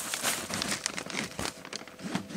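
Clear plastic wrapping on a kayak crinkling and rustling as it is handled and pulled, a dense run of irregular crackles.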